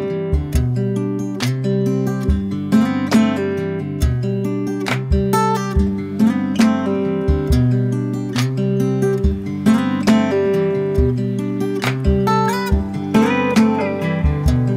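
Background music: a strummed and plucked acoustic guitar track with a steady rhythm.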